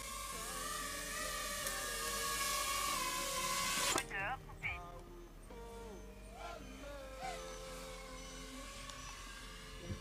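Small FPV quadcopter's brushless motors whining as it flies toward the listeners, several thin tones rising slowly over a steady hiss. The sound cuts off sharply about four seconds in, leaving fainter motor tones.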